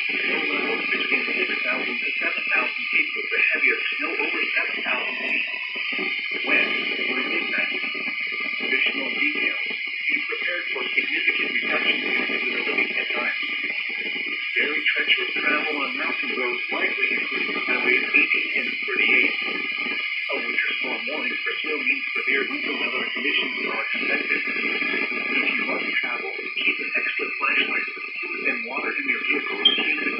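Radio broadcast playing through a small receiver's speaker: music with a voice over it, thin-sounding with no deep bass or high treble.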